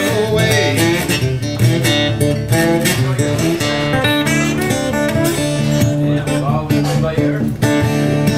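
Solo blues slide guitar playing an instrumental passage: a steady stream of picked notes, with some notes sliding in pitch.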